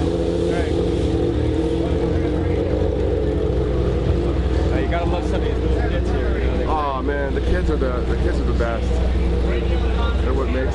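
A steady engine drone that holds one pitch throughout, with people's voices over it at times.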